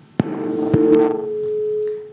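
A click, then a steady electronic tone held for about a second and a half that cuts off abruptly, with a second click partway through.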